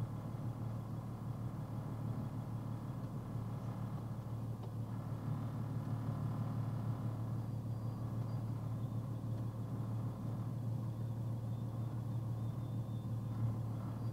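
Box truck's engine idling with a steady low hum, heard from inside the cab as the truck sits and creeps forward at walking pace.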